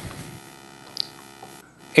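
Room tone with a steady electrical hum made of evenly spaced tones, and one brief faint click about a second in.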